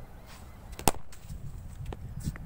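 A cricket bat striking the ball once: a single sharp crack about a second in, followed by a fainter knock near the end.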